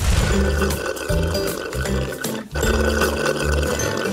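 Slurping through drinking straws, two long sucks with a short break between them, over background music with a steady bass line.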